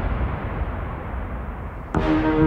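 A low, even rumbling noise with no clear tones, fading gradually over about two seconds; sustained music notes come in right at the end.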